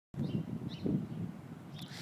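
Outdoor street ambience: a low, uneven background rumble with two faint bird chirps in the first second.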